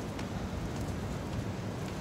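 Steady, even street noise with a low rumble, moderately loud, with no single event standing out.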